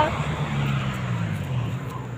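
A car driving past on the street, a low engine and tyre rumble that fades away towards the end.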